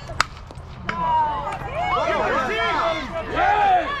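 A softball bat hits the pitched ball with one sharp crack just after the start. From about a second in, spectators shout and cheer, many voices overlapping.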